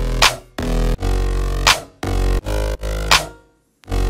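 Electronic beat playing back from FL Studio: a sustained mid bass run through Brauer Motion, an auto-panning plugin, with a sharp drum hit about every one and a half seconds. The beat drops out briefly a little after three seconds in, then comes back.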